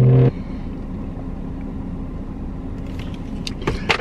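A man's closed-mouth 'mmm' hum breaks off just after the start, leaving the steady low rumble of a car heard from inside the cabin. A few small clicks come near the end.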